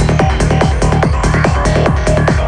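Loud trance-style electronic dance music from a live DJ set, heard through a club sound system. It has a fast, steady kick-drum beat under short synth notes.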